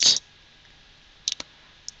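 Computer keyboard keystrokes: a short cluster of clicks a little past the middle and a single click near the end.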